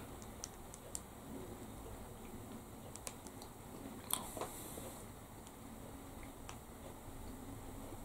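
Faint, quiet chewing of a soft chocolate-chip brioche roll, with scattered small mouth clicks; one click about four seconds in stands out.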